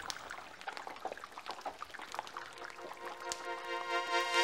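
Liquid poured over a foam tooth model, trickling, with scattered small crackles as the foam is eaten away. Sustained music chords come in about three seconds in.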